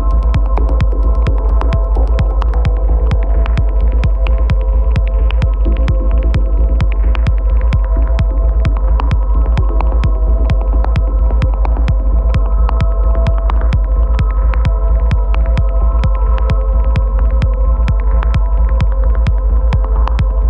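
Hypnotic techno track: a steady four-on-the-floor kick about twice a second over a deep sustained bass and droning synth tones. The bright high ticks drop away about two and a half seconds in.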